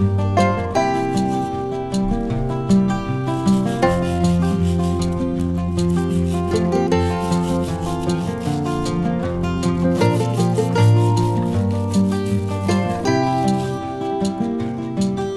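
Background music on plucked acoustic guitar, with a bristle brush scrubbing the peel of a lemon underneath it.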